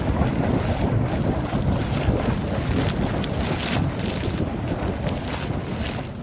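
A steady, dense rushing noise, heaviest in the low end, easing slightly near the end.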